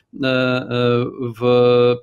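A man speaking Polish, hesitating with drawn-out vowel sounds; the last one is held at a level pitch for about half a second near the end.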